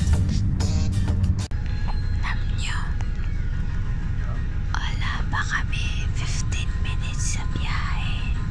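Background music cuts off suddenly about a second and a half in, giving way to the steady low rumble of a moving bus heard from inside the cabin. Soft whispering close to an earphone microphone comes over the rumble twice.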